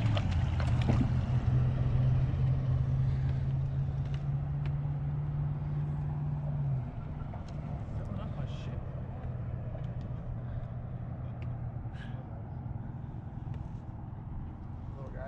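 A motor running with a low, steady hum, louder for the first seven seconds or so and then quieter, with a few faint clicks over it.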